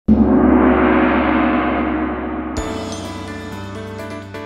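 A gong sound effect struck once, with a loud shimmering ring that swells and then slowly fades. About two and a half seconds in, a bright chiming jingle takes over.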